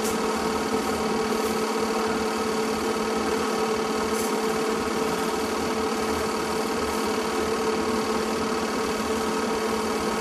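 Film projector running with a steady, even mechanical hum.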